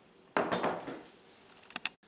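A glass mixing bowl set down and pushed across a wooden cutting board: a sudden clunk and scrape about a third of a second in that fades within half a second, then a few light clicks near the end.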